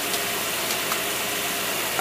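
Engine fitted with a Predator racing carburetor running steadily on a test stand, a constant even drone with no change in speed.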